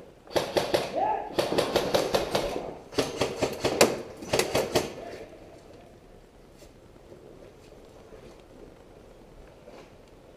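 Airsoft rifle fire: four quick bursts of rapid sharp shots, about seven a second, over the first five seconds, echoing off the walls.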